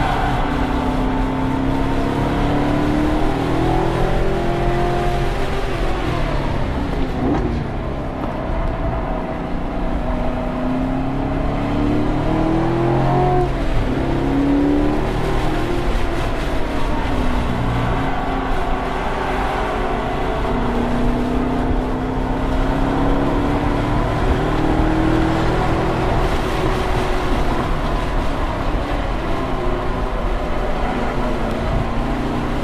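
Chevrolet Corvette C7 Grand Sport's 6.2-litre V8 heard from inside the cabin at track pace: the engine note rises as the car accelerates and falls away as it slows for corners, three times over, under steady road and wind noise.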